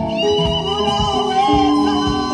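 A live worship band playing: a steady drum beat under held keyboard chords, with a long high note held over the top.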